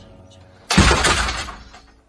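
A sudden loud crash in the song's production, about three-quarters of a second in, dying away over about a second, over a faint music bed.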